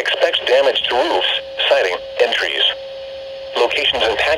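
NOAA Weather Radio computer voice reading a severe thunderstorm warning through a Midland weather radio's small speaker. A faint steady tone sits under the short pauses between phrases.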